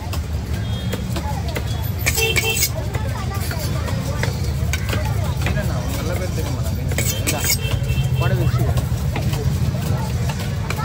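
Busy fish-market background: a steady low engine rumble under faint chatter of voices, with two short sharp noises about two and seven seconds in.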